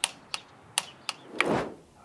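Four sharp clicks in the first second or so from a torque wrench with a hex bit tightening the Honda Forza 300's final drive cover screws to 10 N·m, followed by a brief rustling sound about one and a half seconds in.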